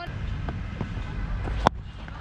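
One sharp crack of a cricket bat striking the ball near the end, over a low rumble of wind on the helmet-camera microphone.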